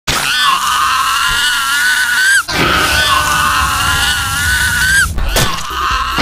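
A cartoon character's long, high-pitched scream, held steady and rising slightly at the very end. The same recorded scream plays twice in full, each about two and a half seconds long, and starts a third time just before the end.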